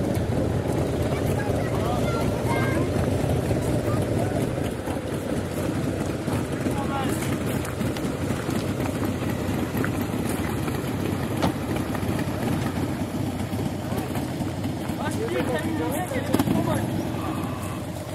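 A car engine idling steadily, with people talking in the background.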